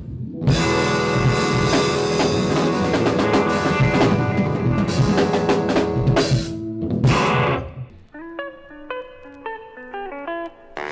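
Live band playing with drum kit and guitar. Near the end the band drops out, leaving a single instrument playing a run of separate notes.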